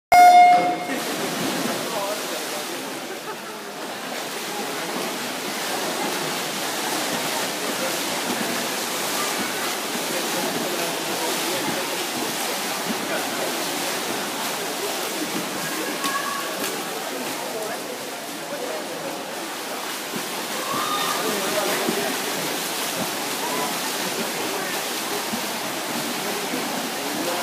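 An electronic race-start beep sounds once, a single pitched tone lasting about half a second. Then a steady wash of butterfly swimmers splashing and spectators shouting echoes through an indoor pool hall.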